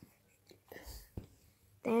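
Soft whispering from a young girl about a second in, then a single faint knock, and the start of a spoken word near the end.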